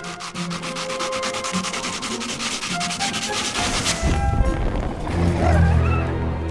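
A match being scraped along the striking strip of a matchbox: a fast, even rasp of many short strokes that goes on for about four seconds and ends in one sharper stroke.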